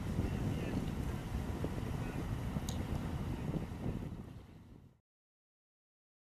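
Wind rumbling on the microphone over an outboard-less motor cruiser running on the river, a steady noisy wash with no clear engine note. It fades out about four seconds in and ends abruptly in silence.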